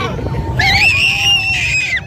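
High-pitched screams of roller coaster riders, one long scream held from about half a second in until the end, over the steady rumble of the coaster ride.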